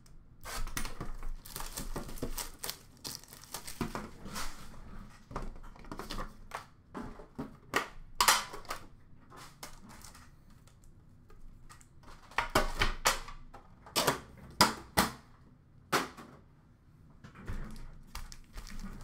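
A sealed Upper Deck Series One hockey card tin being opened and handled: the plastic wrap crinkling and tearing, and irregular sharp clicks and knocks from the metal tin and lid, loudest past the middle.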